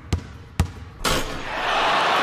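Logo-sting sound effects: a basketball bouncing twice, about half a second apart, then from about a second in a loud rising rush of noise that holds.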